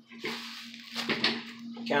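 Rustling and handling noises, with a sharp click about a second in, over a steady low electrical hum.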